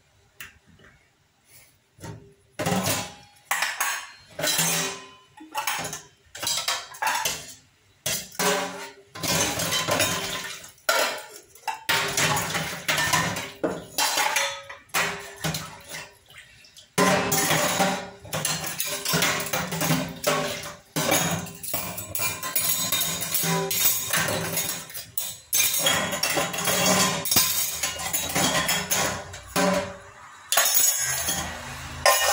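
Stainless steel plates, bowls and pots clanking and clinking against each other and the steel sink as they are handled and scrubbed by hand. Separate knocks come in the first several seconds, then the clatter and scrubbing run almost without a break.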